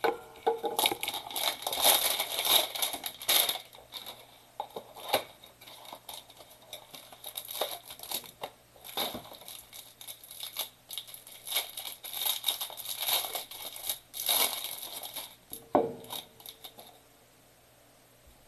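Plastic wrapper being torn and crinkled off a stack of Topps baseball cards, in irregular bursts, with a single knock near the end.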